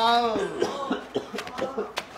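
A person's voice: a brief vocal sound that rises and falls in pitch at the start, then a few short coughs.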